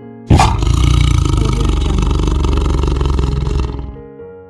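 Tiger roaring: one long rough roar that starts suddenly a moment in, lasts about three seconds, then fades near the end.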